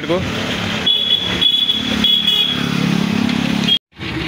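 Motor traffic along a town street, a vehicle engine running, with a short high-pitched tone about a second in and again about two seconds in. The sound cuts off suddenly just before the end.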